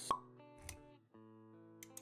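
Intro music sting with held notes. A short pop sound effect comes just after the start, and a soft low thud follows about two-thirds of a second in.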